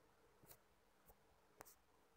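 Near silence with three faint computer mouse clicks, about half a second, one second and a second and a half in.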